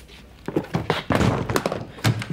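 A hard-shell suitcase being handled and its lid closed: a quick run of thuds and clicks beginning about half a second in.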